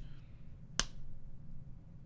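A single short, sharp click about a second in, over faint room tone.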